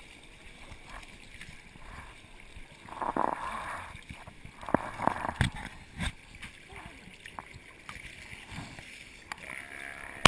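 Seawater sloshing and splashing around a camera at the water's surface, with a few sharp knocks a little past the middle and muffled voices.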